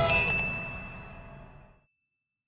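End-screen sound effect: a mouse-style click and a bell-like ding that rings out as one high steady tone and fades away over about two seconds, with the last of the outro music dying off under it.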